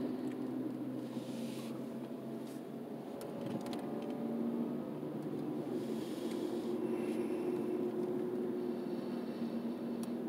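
Steady in-cabin noise of a car driving: engine and tyre drone with a low hum, and a few light clicks about three seconds in.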